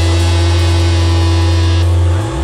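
Live rock band on distorted electric guitars and bass holding one loud sustained chord. The higher ringing cuts off sharply just before the end.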